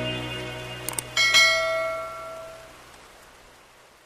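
Background music fading out, then two quick mouse clicks about a second in, followed by a bright bell chime that rings and dies away: the sound effects of an animated subscribe button and notification bell.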